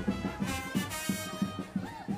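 Carnival brass band playing a lively marchinha, with trumpets and trombones carrying the tune over a steady beat.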